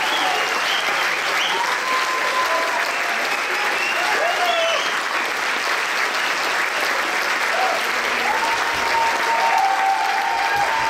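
Audience applauding steadily, with scattered shouts and whoops rising over the clapping.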